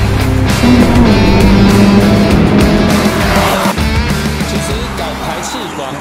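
Toyota GR86's 2.4-litre flat-four engine running hard on a race track through an aftermarket Fi Exhaust stainless-steel valved exhaust, mixed with loud rock music; the whole mix fades down over the last few seconds.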